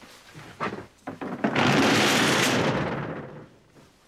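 Clothes being handled: a loud, dense rustle of fabric that starts about a second and a half in, lasts nearly two seconds and then dies away, after a few faint rustles.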